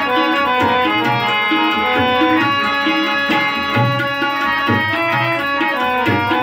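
Harmonium playing a melody of held reed notes, accompanied by tabla keeping a steady rhythm, with deep bass strokes from the bayan under the strokes of the smaller drum.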